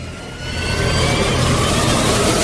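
Approaching vehicle sound effect: a rising, noisy engine rumble that grows steadily louder, its pitch climbing slightly.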